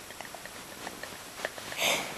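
A short sniff, one quick noisy breath through the nose, just before the end, after a few faint light ticks.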